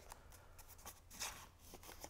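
Near silence with a faint rustle of cardstock as a paper piece is pushed into place inside a small paper luminary, with a couple of soft bumps near the middle.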